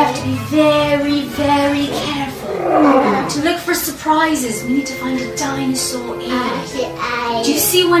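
Background music with a stepping melody, and a roar about three seconds in.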